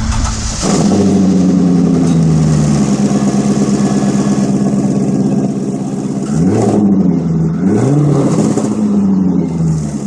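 C5 Chevrolet Corvette V8 with a cheap stainless steel eBay exhaust, idling steadily, then revved twice, about six and a half and eight seconds in, with the pitch rising and falling back each time.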